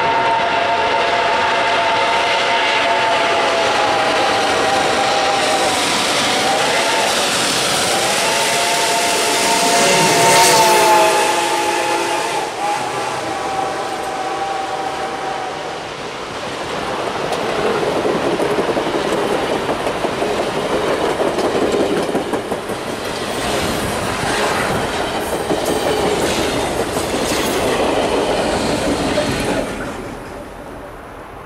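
RBMN 425, a 4-6-2 Pacific steam locomotive, blows its steel Reading six-chime whistle in long blasts as it approaches and passes, with a brief dip in pitch about six seconds in; the whistle stops about fifteen seconds in. The locomotive is loudest passing at about ten seconds. Its passenger coaches then roll by with steady clickety-clack over the rail joints, which fades near the end.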